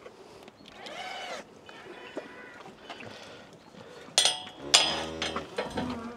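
Galvanised steel cattle crush rattling and clanging as a weanling calf is held in it, with two loud metal bangs about four and five seconds in, the second one ringing on briefly. A short squeak is heard about a second in.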